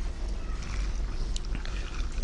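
A steady low hum with a faint hiss above it and a couple of small faint clicks: the background noise of the room.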